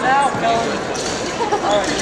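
Several people talking at once in a large hall, with a few knocks or thuds among the voices.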